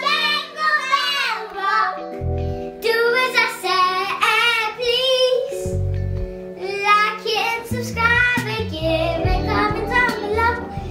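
Young girls singing a song over a backing music track with held low notes and a deep bass.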